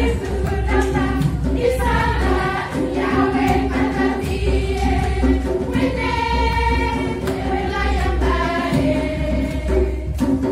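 A group of voices singing a lively song together over a steady beat.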